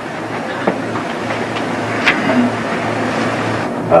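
Overhead projector's cooling fan running with a steady whir and a low mains hum, picked up close to the microphone, with a couple of faint clicks.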